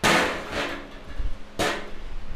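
Two sharp percussive hits. The first comes right at the start, loud, and fades over about half a second. The second comes about a second and a half later.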